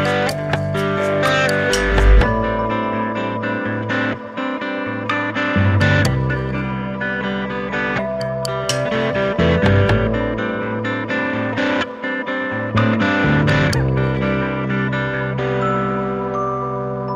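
Instrumental background music, led by a plucked guitar.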